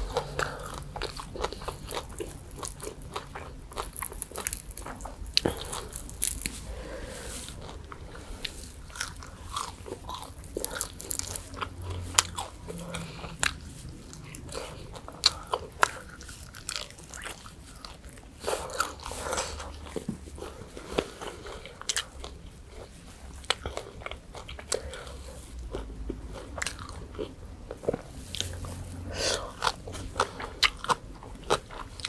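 A person biting and chewing crispy deep-fried pork tail, with many sharp crunches of the fried skin and bone at irregular intervals.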